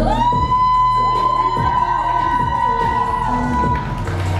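K-pop dance track playing: one long held high note slides up at the start and holds, over softer backing, until it cuts off just before the end.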